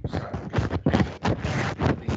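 Rapid, irregular run of knocks and rustles, as loud as the talk around it.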